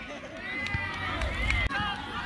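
Distant shouting voices of players on a grass football pitch, with low wind rumble on the phone microphone. The sound cuts off abruptly near the end as the footage changes.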